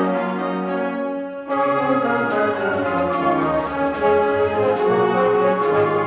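High school concert band playing: a held chord in the brass, then the fuller band with flutes and other woodwinds comes in about a second and a half in and carries on with sustained chords.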